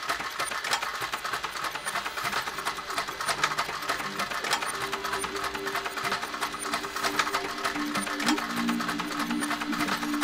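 Background music: a fast, even clicking or clattering rhythm throughout, with sustained low notes coming in about halfway.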